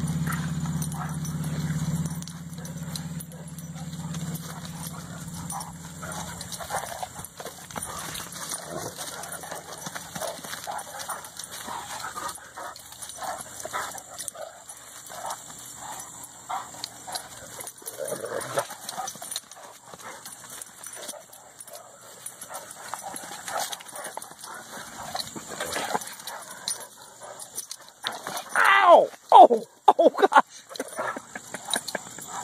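Two Great Dane puppies play-wrestling, with short, scattered dog vocalisations throughout and one loud call falling steeply in pitch near the end. A steady low hum fades out over the first few seconds.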